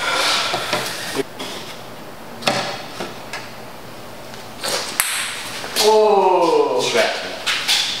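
Plastic cups being picked up and set down on a table: a few light knocks and taps. About six seconds in, a person's voice slides down in pitch.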